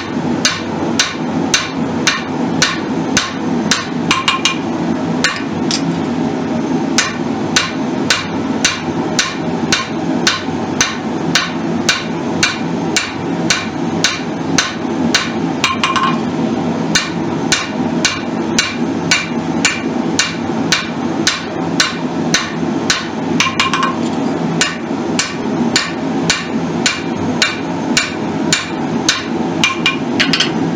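Hand hammer striking hot steel on an anvil in an even rhythm of about two blows a second, drawing out a forged tomahawk blade to a taper; some blows ring briefly. A steady low hum runs underneath.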